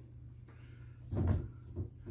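A Swiffer mop head with a towel attached bumping against a window pane: a dull thump about a second in, then a lighter knock, over a faint steady hum.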